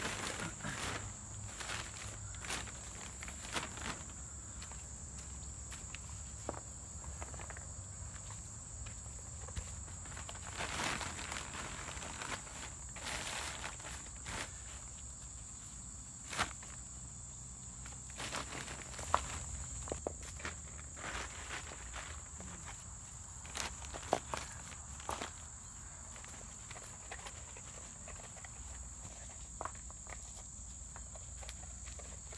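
Rocks being set down and pushed onto the edge of a black plastic sheet to anchor it to the ground: scattered knocks and scrapes with rustling of the plastic, a few sharper knocks in the second half. A steady high buzz of insects runs underneath.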